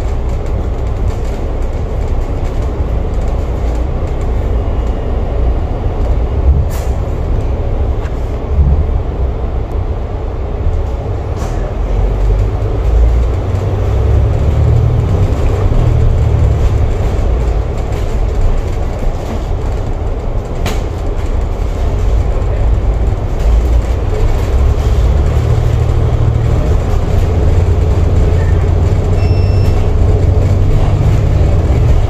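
Alexander Dennis Enviro500 double-deck bus heard from inside while under way, its diesel engine and drivetrain giving a steady low drone that grows heavier about halfway through and again toward the end as it pulls up the exit ramp. A few sharp rattles or clicks cut in over the drone.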